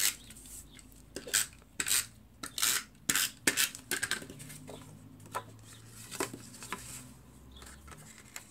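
Stampin' Up! SNAIL tape runner being pulled along the edges of a cardstock panel, laying adhesive in a series of short strokes that come thick and fast for the first four seconds, then sparser.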